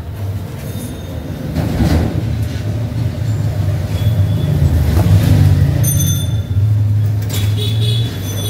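A loud, steady low rumble that builds over the first few seconds and holds, with faint thin high tones coming and going above it.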